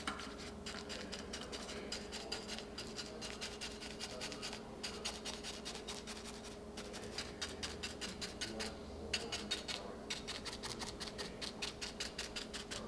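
Chip brush scratching and rubbing as it dabs and strokes paint onto a ridged lamp base: a fast, irregular run of short brush strokes with a few brief pauses.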